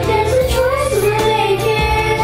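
A group of children singing a song together as a virtual choir, over an instrumental backing track with a beat.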